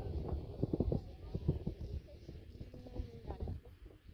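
Faint, indistinct talking, with a low wind rumble on the microphone and a few soft knocks in the first half.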